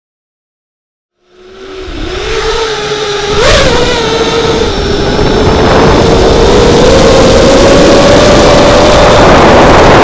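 Brushless motors and propellers of an FPV racing quadcopter whining in flight. The sound fades in about a second in, jumps sharply with a throttle punch at about three and a half seconds, then holds a steady whine that creeps up in pitch under a growing rush of wind.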